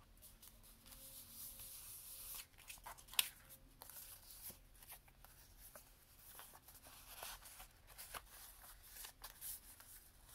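Paper and cardstock being handled: a faint rustle, one sharp tap about three seconds in, then scattered small ticks as the card is shifted and lifted.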